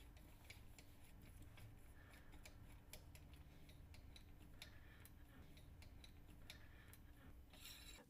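Very faint, irregular metallic clicks and ticks as a cannulated screwdriver is turned by hand, driving a 7.3 mm cannulated screw through a metal tissue-protection sleeve into a bone model, over near-silent room tone.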